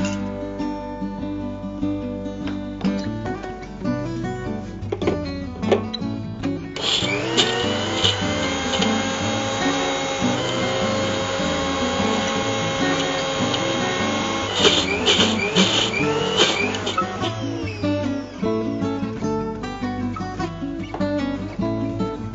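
Electric mixer grinder grinding soaked dal and red chilli into a coarse paste. It runs steadily for about eight seconds from around seven seconds in, then gives a few short pulses. Acoustic-guitar background music plays throughout.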